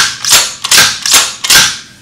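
Bond Arms lever-action rifle being cycled rapidly by hand: five sharp metallic clacks of the lever and bolt, evenly spaced about 0.4 s apart, as the action is thrown open and shut.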